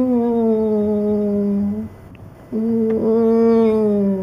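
A man's voice imitating an RC car engine: two long, held hums, each sliding slowly down in pitch, with a short break about two seconds in.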